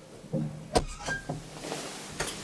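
Old elevator's wooden doors being unlatched and pushed open: a low knock, then one sharp clack about three quarters of a second in, followed by a few lighter clicks and knocks.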